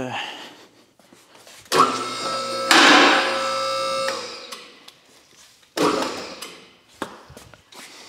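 A two-post car lift's electric hydraulic pump motor runs for about two seconds, getting louder partway through, then cuts off suddenly. A metallic clank with brief ringing follows a couple of seconds later, as the lift arms are set under the car.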